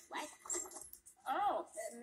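Short wordless vocal cries from a cartoon soundtrack, played through computer speakers. The loudest comes about one and a half seconds in and rises, then falls in pitch.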